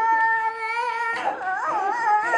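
A young girl's high-pitched wail: one long note held steady, then breaking into a wavering, whimpering whine about a second in.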